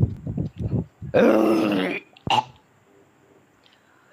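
A man's mock retching: a few short throaty grunts, then one loud, drawn-out gagging noise lasting about a second, and a brief one after it, voicing disgust.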